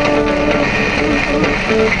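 Music playing from the car's radio: a melody of short held notes over a steady backing.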